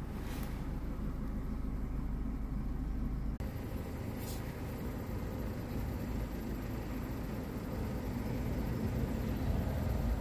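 Faint clicks from the Vauxhall Corsa B's dashboard light-switch dial being turned, about half a second in and again just after four seconds in, over a steady low rumble of background noise. The rumble changes abruptly about three and a half seconds in.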